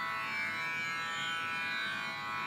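Steady plucked-string drone of a Carnatic-style accompaniment, many tones ringing together evenly, with no voice over it.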